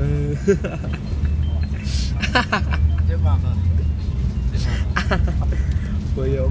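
Laughter and chatter over the steady low rumble of a moving road vehicle's interior.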